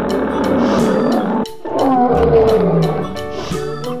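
Lion roaring twice, two long roars with a brief break between them, over background music.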